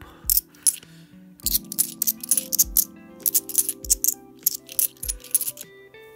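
UK £2 bimetallic coins clinking against one another as they are handled and sorted in the hand, in a quick irregular run of clinks with a short pause about a second in. Background music plays under it.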